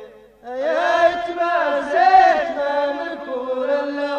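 Unaccompanied chanted singing in an Amazigh (Tamazight) song: one long vocal phrase of held and gently gliding notes. It enters about half a second in after a short silence and fades near the end.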